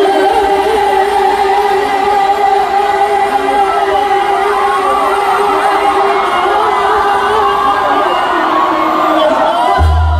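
Live regional Mexican concert heard from the crowd: one long note held steady for about eight seconds while the audience sings and cheers along. Right at the end the band comes in with heavy bass.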